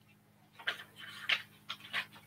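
Paper rustling in short, irregular soft bursts, as pages of a book or notes are handled and turned, over a faint steady electrical hum.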